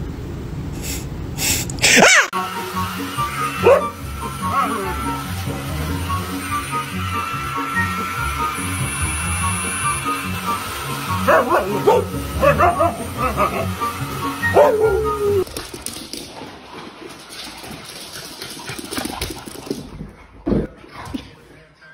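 Background music with a steady beat. A loud falling glide comes about two seconds in. Around the middle, a husky gives a run of bending, whining calls.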